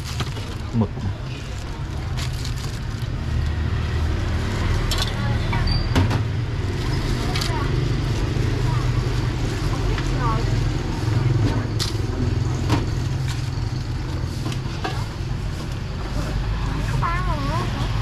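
A vehicle engine running close by on the street: a steady low rumble that grows louder about three seconds in and holds, with a few sharp clinks of bowls and utensils over it.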